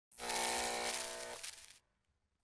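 Logo-reveal sound effect: a dense rushing noise with a steady held tone under it. The tone stops a little over a second in, and the rush cuts off suddenly near the end.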